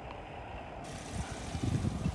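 Outdoor background noise: a steady hiss with low rumbling gusts of wind on the phone's microphone, the gusts growing stronger near the end.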